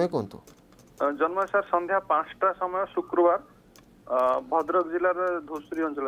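Speech only: a person's voice heard over a telephone line, thin and cut off in the treble, in two phrases with a pause of about a second between them.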